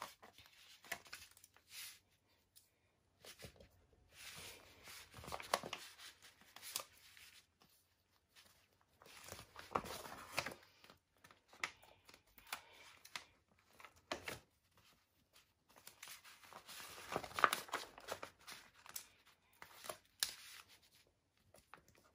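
Stickers being peeled off a paper sticker sheet and pressed onto a magazine page, the sheet rustling as it is handled: faint, irregular crinkling and tearing in a few short clusters.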